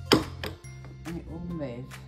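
A single sharp click, the loudest sound here, as the foot brake on a trolley's rubber castor is pushed down at the top to release it, with background music playing.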